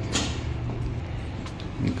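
An interior door being opened: a brief click and swish just after the start, then only a low steady hum.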